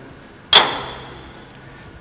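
A single sharp metallic clink about half a second in that rings briefly as it fades: a steel Allen key striking a socket screw and the steel clamp bar of a press brake's bottom tooling.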